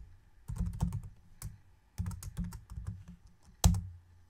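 Computer keyboard typing: two short runs of keystrokes, then one single louder keystroke near the end, the Enter key that runs the typed line in the console.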